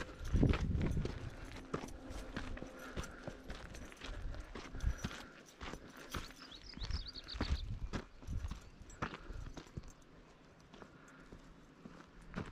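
Footsteps on a dirt and grass footpath, uneven steps with low bumps from a handheld camera, and a brief high chirping about six to seven seconds in.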